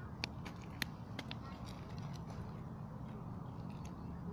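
A parcel's plastic packaging being handled and cut open with scissors: a scatter of sharp crinkles and snips, most in the first two seconds and a couple more near the end, over a steady low background rumble.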